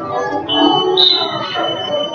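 Scoreboard timer buzzer sounding one steady high-pitched tone as the period clock runs out at 0:00, over crowd voices and shouting.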